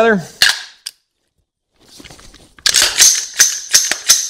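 AR-15-style rifle's action being worked by hand after cleaning and lubrication: a couple of sharp clicks about half a second in, then from about two and a half seconds a rapid series of sharp metallic clacks as the charging handle and bolt carrier are cycled, running smooth.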